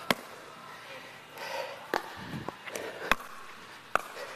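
A pickleball rally: four sharp pops about a second apart as the hard plastic ball is struck by the paddles and bounces off the court.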